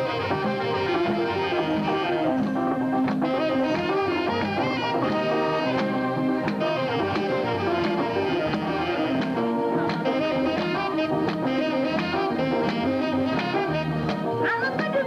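Live Eritrean band music led by a trumpet playing a held, melodic line over electric guitars, with scattered percussion strikes.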